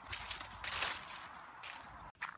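Footsteps rustling and crunching through dry fallen leaves on a lawn, uneven, a little louder just before the middle.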